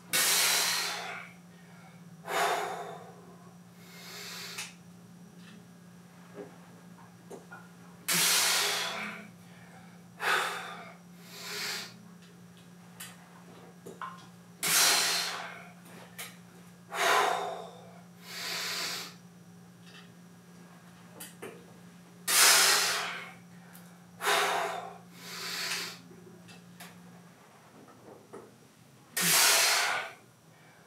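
A man breathes hard under a loaded barbell through a set of seated good mornings: forceful, hissing breaths in and out, about one every couple of seconds, in time with the reps.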